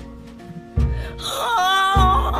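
A female blues singer's wordless wailing vocal, coming in a little past halfway and holding a high, wavering note, over sparse instrumental backing with a low note struck just before the voice enters.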